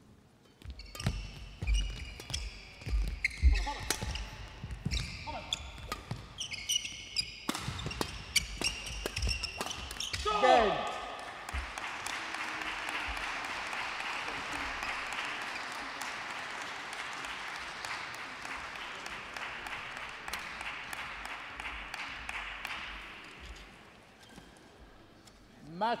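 Badminton rally: racket strikes on the shuttlecock and shoes squeaking on the court floor, ending about ten seconds in with a player's falling shout as the match is won. Then steady applause from the spectators for about twelve seconds, fading out near the end.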